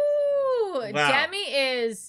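A woman's drawn-out, high "ooh" of emotion: one long note held for nearly a second, then bending down and breaking into more wavering voice before it stops near the end.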